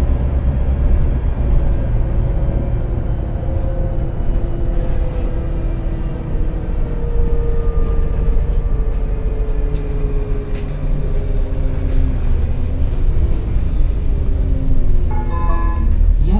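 Renault Citybus 12M city bus heard from inside the passenger cabin: a steady low engine and drivetrain rumble with a whine that slowly falls in pitch as the bus slows.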